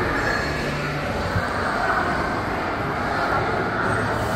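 Steady background noise of a busy indoor public space: a continuous even hum and hiss with no distinct events.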